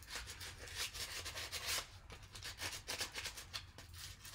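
Sandpaper rubbed by hand over a wooden leaf cutout in quick, repeated scratchy strokes.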